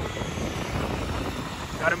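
Steady rumble of a vehicle in motion on a city street, wind and road noise with no clear engine note. A voice starts right at the end.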